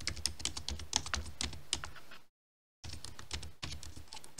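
Rapid keystrokes on a computer keyboard typing a line of code. The clicking breaks off into dead silence for about half a second past the middle, then resumes.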